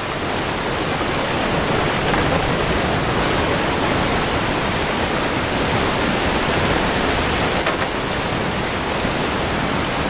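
Whitewater rapid rushing steadily over and around boulders, a loud, unbroken roar of water.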